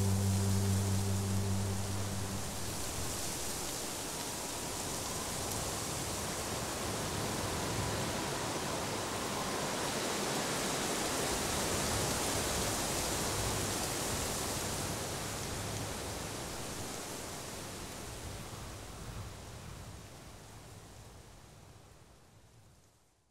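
A steady rushing noise, like rain or running water, that follows the end of a song, swells slowly, then fades away near the end.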